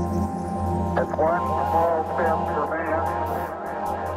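Soundtrack music with a steady low drone and held tones. About a second in, a voice comes in over it, and a fast ticking beat joins about two seconds in.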